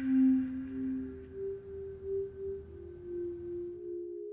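Background score of sustained electronic drone tones: a low held note fades about a second in as a higher note takes over, later joined by a second overlapping note.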